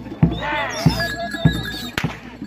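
Bantengan accompaniment music: a drum struck at an even pulse, a little under two beats a second. Over it comes a high, wavering, falling wail near the start, then a thin held tone.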